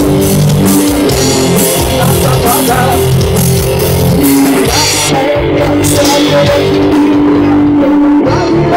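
Live rock band playing an instrumental passage: distorted electric guitars holding sustained notes over bass guitar and a drum kit, loud and steady.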